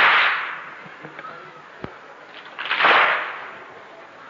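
A crowd of mourners striking their chests in unison (latm), two loud strokes about three seconds apart, each a broad slap that dies away over most of a second.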